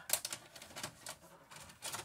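A faint run of light, irregular clicks and rattles, the sound of handling a VHS tape and VCR before playback.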